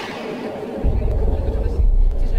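A hiss that fades away, then a deep, low rumble that sets in just under a second in and holds: a dramatic sound effect in the soundtrack.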